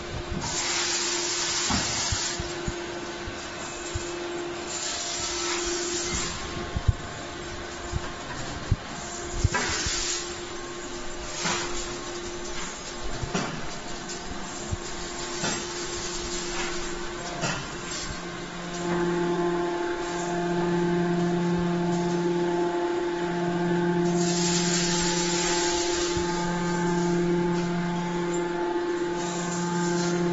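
Hydraulic scrap-metal briquetting press running, its hydraulic unit giving a steady hum with loud hissing bursts and scattered metallic knocks. From about two-thirds of the way through, a lower hum cuts in and out in a steady cycle about every two seconds.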